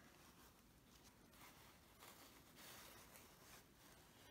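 Near silence, with faint soft rustles of cotton fabric being handled.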